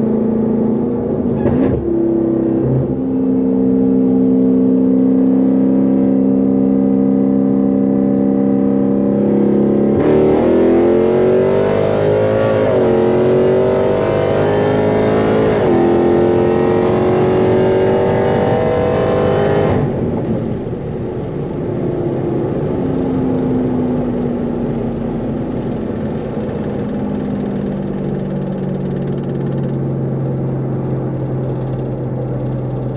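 Dodge Charger SRT Hellcat's supercharged 6.2-litre HEMI V8, heard from inside the cabin, running steadily at highway speed, then about ten seconds in a full-throttle 60–130 mph pull with the pitch climbing and dropping at two upshifts. About twenty seconds in the throttle shuts abruptly and the engine drops to a lower drone as the car slows.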